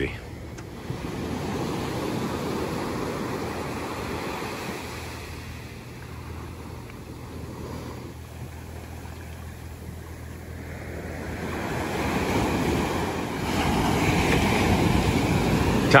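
Ocean surf washing up a sandy beach: a steady hiss of breaking waves and surging water, swelling louder a couple of seconds in and again over the last few seconds.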